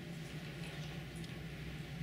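Ballpoint pen writing on paper, faint scratching strokes over a quiet room with a steady low hum.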